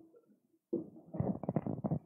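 Handling noise of a handheld microphone being picked up from a table: irregular low rubbing and knocking that starts a little under a second in, after a near-silent pause.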